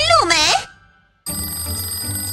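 A voice over background music for the first half-second, then a brief silence. A little past the middle, a steady high electronic ringing tone of several held pitches starts suddenly over the music.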